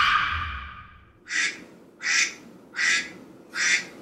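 An alarm going off: a longer tone that fades over the first second, then a short sound repeating four times, about 0.8 s apart.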